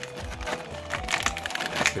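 Clear plastic blister tray crinkling and clicking in irregular little crackles as a small metal figure is worked out of it, over steady background music.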